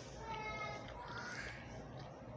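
A long, high-pitched animal call in the background, held for over a second, rising slightly in pitch past its middle.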